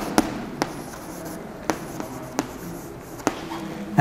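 Chalk writing on a chalkboard: a low scratching of strokes broken by about half a dozen sharp taps as the chalk meets the board.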